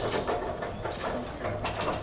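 Packaged gardening gloves clicking and rattling on metal display hooks as a hand sorts through them, in irregular clacks.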